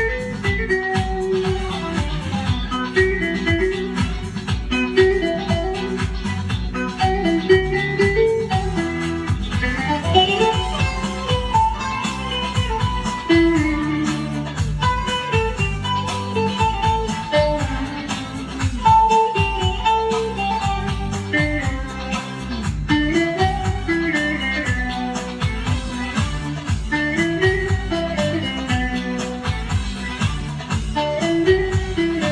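Long-necked bağlama (saz) played solo with a plectrum: a continuous instrumental folk melody of rapid picked notes over the ringing lower strings.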